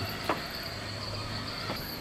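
Insects chirring steadily in a high, even drone, with a faint low hum beneath.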